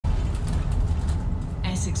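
Steady low rumble inside a London bus, from the bus's engine and running gear. The automated iBus stop announcement starts speaking near the end.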